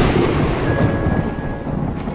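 Rumbling, thunder-like noise of a logo animation's sound effect, slowly fading, with a faint steady high tone coming in under it partway through.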